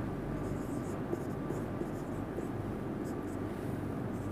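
A felt-tip marker writing on a whiteboard: a string of short, faint, scratchy strokes with small gaps between them, over a steady low room hum.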